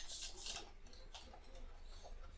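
A few faint clicks and rustles as a small handheld electronic string tension tester is handled, over a low steady room hum.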